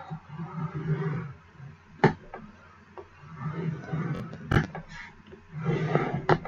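Scoring tool scraping along a groove of a scoring board through cardstock, with a few sharp clicks and taps of the tool and paper on the board, the loudest about two seconds in and again around four and a half seconds.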